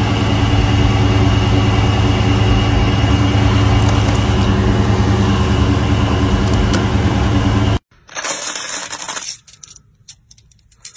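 A vehicle engine idling steadily with a low hum. It cuts off abruptly near the end, and about a second of metallic clinking and rattling of loose steel bearing balls follows.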